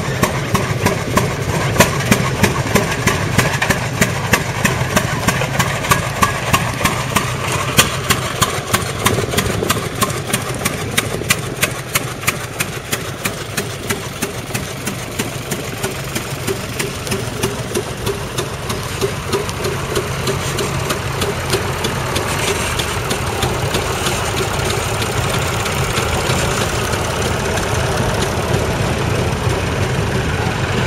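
Vintage tractor engine running, with a regular beat of sharp knocks through about the first half, then a steadier, smoother run.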